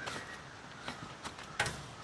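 Light clicks and knocks with faint rustling as a man shifts his weight on a homemade saddle hunting platform and leans back into his saddle tether. The clearest click comes a little after halfway.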